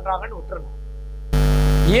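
Steady electrical mains hum under a man's voice trailing off; about a second and a half in, the hum and background hiss jump suddenly louder, and speech starts again near the end.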